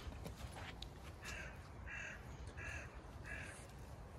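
A crow cawing faintly four times, evenly spaced about two-thirds of a second apart.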